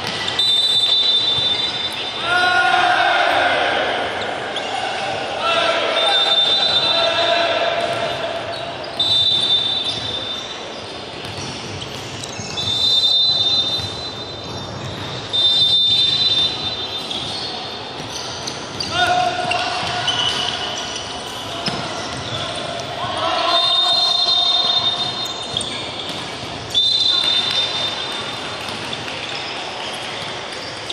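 Indoor volleyball match in a gym hall: ball hits and play on the court, with players and spectators shouting and chanting in loud swells. A shrill high tone of about a second sounds several times.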